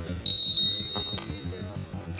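An umpire's whistle blown once to start a hockey penalty: a single long, high, steady blast starting about a quarter second in and fading away. About a second in comes a sharp crack as the stick strikes the ball.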